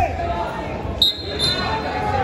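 A referee's whistle blown once, about a second in: a short, high steady blast. Crowd voices and chatter run underneath.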